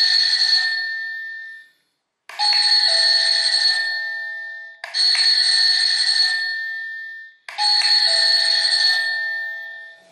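SilverCrest battery-free wireless doorbell chiming as its self-powered push button is pressed again and again: one chime fading out, then three more about every two and a half seconds, each a ringing tone that fades away, the last cut short near the end.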